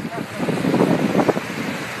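Indistinct voices mixed with wind noise on the microphone, then the steady rushing wash of waves breaking on the shore, growing louder near the end.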